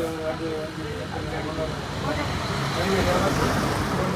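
Street traffic: a motor vehicle passing on the road, its noise swelling through the second half, with faint voices in the first second or so.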